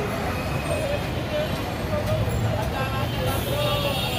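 Busy street ambience: a steady rumble of road traffic with voices in the background.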